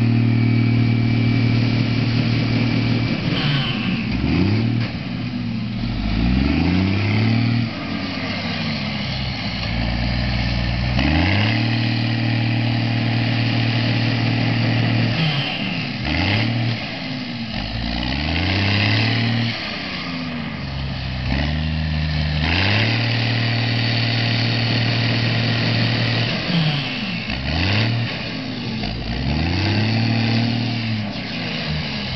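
Coe self-propelled nut tree shaker working through an orchard: a loud, steady machine drone that repeatedly sweeps down and back up in pitch, cycling roughly every ten seconds as it shakes one tree after another.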